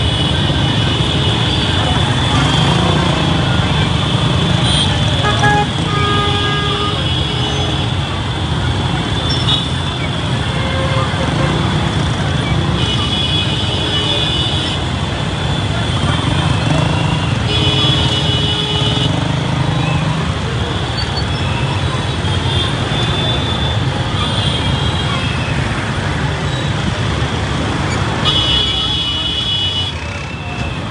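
Dense street crowd moving with motorcycles and three-wheeled taxis: a steady din of engines and voices, with horns honking several times, in longer blasts around the middle and again near the end.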